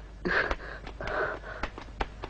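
A woman gasping: two short, breathy gasps.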